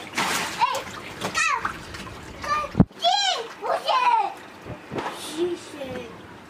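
A young child's high-pitched, wordless cries and exclamations, with water splashing as he wades in a shallow fish pond. A single sharp knock just under three seconds in.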